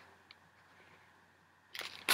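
Mostly near silence; near the end, a brief crinkle of small plastic bead packets being handled.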